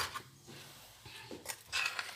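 Faint scraping of a spoon in a stainless steel pot of flour and mashed plantain as mixing begins, with a couple of short scrapes near the end.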